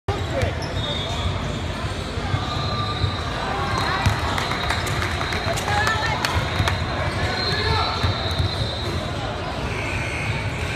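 Basketball being dribbled on a hardwood gym floor, repeated thuds echoing in a large hall, with sneakers squeaking and voices chattering in the background.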